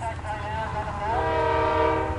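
Diesel freight locomotive's air horn sounding one steady multi-note chord that starts about halfway in, over a constant low rumble.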